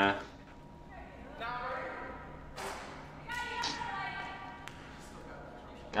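Faint voices echoing in a large gym, with a few light thuds.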